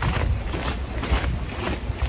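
Wind buffeting the phone's microphone as an uneven low rumble, with footsteps crunching on icy snow about twice a second.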